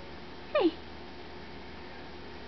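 A two-week-old Australian Shepherd puppy giving one short, high squeak that falls steeply in pitch, about half a second in.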